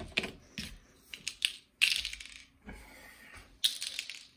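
Light knocks, taps and scrapes of a kitchen knife and bars of cold process soap against a tabletop as the bars are trimmed and handled, with louder knocks about two seconds in and near the end.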